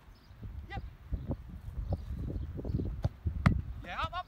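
Dull thuds of footfalls and movement on grass, then two sharp knocks in the last second, the second one the loudest, as a football is struck and the goalkeeper dives to save it. A short voice is heard near the end.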